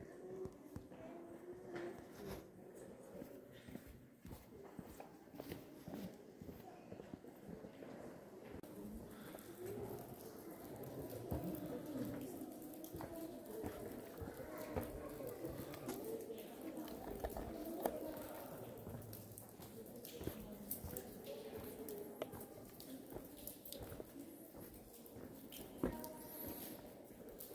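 Faint murmur of other visitors' voices in the cave, rising and falling without clear words and somewhat louder in the second half, with occasional light footsteps on the trail.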